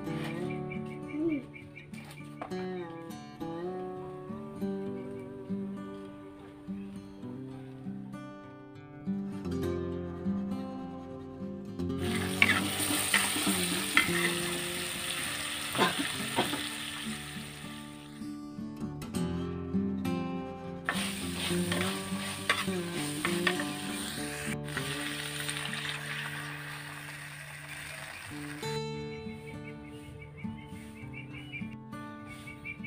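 Chopped garlic, shallots and chillies sizzling in hot oil in an earthenware wok and stirred with a metal spatula, over background music. The sizzling starts partway through, breaks off for a few seconds, then resumes until shortly before the end.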